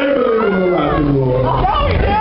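A man's amplified voice giving one long, growling shout that slides steadily down in pitch over about a second and a half, with no band playing.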